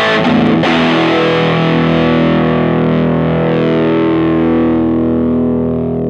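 Electric guitar played through a Skreddy Hybrid Fuzz Driver fuzz pedal, switched on. A distorted chord is struck right at the start and left to sustain, ringing on and slowly fading.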